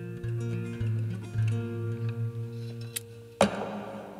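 Acoustic guitar played with changing, ringing notes, ending in a sudden sharp knock about three and a half seconds in, after which the playing stops.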